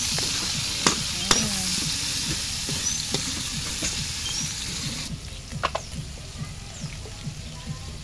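Diced meat sautéing with garlic and onion in a steel wok, a steady sizzle while a metal spatula stirs it, with sharp clicks of the spatula against the pan about a second in and again near six seconds. The sizzle drops suddenly about five seconds in.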